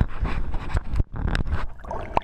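Muffled underwater sound picked up by a GoPro HERO3 Black inside its waterproof housing: churning water, low rumble and scattered knocks from handling the housing, with the swimmer's heavy, panting breath.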